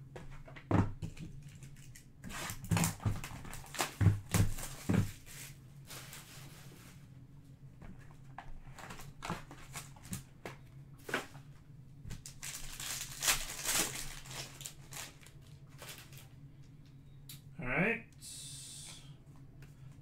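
Hands handling sealed trading-card boxes and opening a card pack. A string of knocks and thumps comes in the first five seconds, then the foil wrapper tears and crinkles for a couple of seconds about two-thirds of the way in. A short vocal sound comes near the end.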